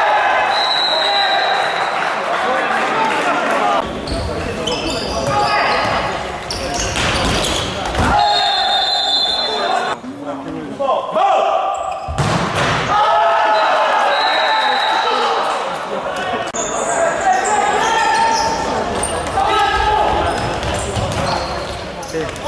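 Futsal ball thudding off feet and the court floor, a few sharp thumps, under shouting voices, all echoing in a large sports hall.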